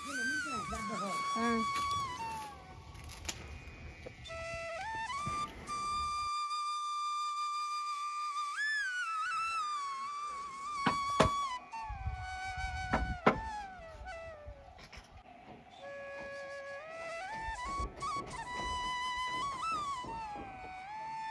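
Background music: a slow flute melody of long held notes that slide up and down between pitches.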